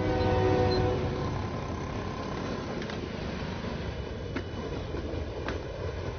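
A low rumble swells to a peak with a horn-like chord of several steady tones, which fades about a second in; a steady low rumble carries on, with a few faint clicks near the end.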